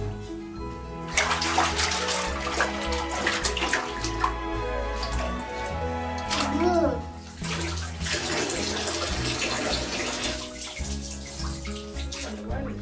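Bathwater splashing in a bathtub as a baby slaps and kicks in it, in busy stretches from about a second in with a short lull past the middle, over steady background music.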